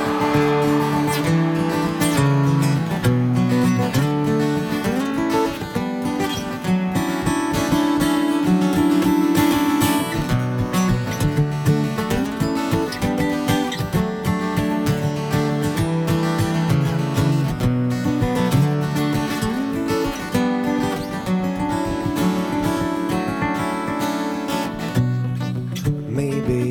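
Two acoustic guitars playing an instrumental introduction live, a steady flow of plucked and strummed notes.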